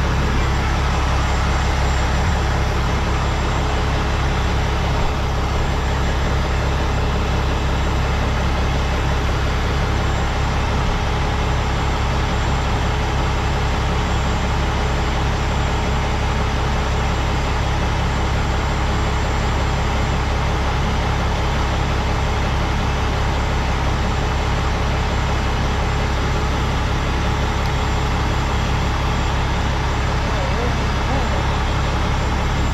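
Heavy rotator tow truck's diesel engine running steadily at idle, a constant low rumble.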